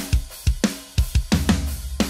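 Playback of a sampled MIDI drum kit: kick, snare and cymbals in a busy beat of about five hits a second, with a low bass note joining in the second half. It is the dry, close-mic-only version of the drums, less realistic than the mix built on the room mics.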